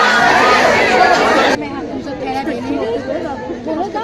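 A crowd of people talking at once, many overlapping voices. About a second and a half in, the sound cuts abruptly to a quieter stretch of crowd chatter.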